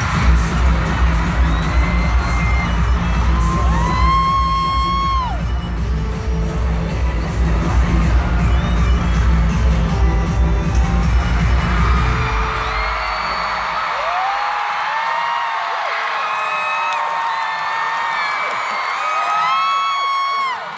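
Loud K-pop track over an arena sound system, with a heavy bass beat and an audience screaming over it. The beat stops about two-thirds of the way through, and high screams and cheering from the crowd go on after it.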